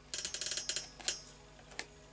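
Tarot cards being handled in the hand: a quick run of crisp clicks and flicks as the cards knock and slide against each other, then two single card taps.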